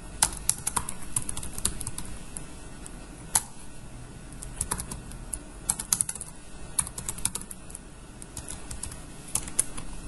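Typing on a computer keyboard: irregular keystroke clicks, some in quick runs and some single, with short pauses between.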